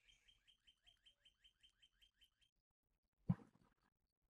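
Near silence with faint bird chirping: a quick run of short, falling chirps, about six a second, that stops about two and a half seconds in. A single short noise comes a little past three seconds in.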